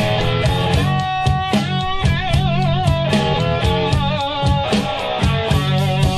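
Live rock band playing an instrumental stretch: a lead electric guitar holds wavering notes with wide vibrato and plays quick runs over drums and bass.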